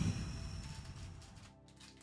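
Foil wrapper of a Pokémon Aquapolis booster pack being torn open: a sudden crinkling rip that fades away over about a second and a half.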